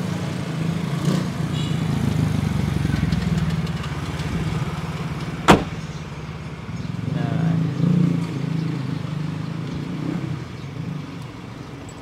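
Low rumble of passing motor vehicles, swelling twice and then fading. A single sharp click comes about five and a half seconds in.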